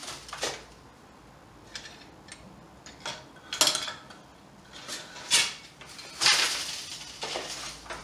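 Floor loom being worked by hand: a string of light clacks and knocks from the wooden loom and the metal pick-up wire, with a longer sliding rustle about six seconds in.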